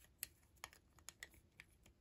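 Faint, light clicks of plastic Lego pieces being handled as a small animal figure is fitted onto a Lego build, about five small clicks spread over two seconds.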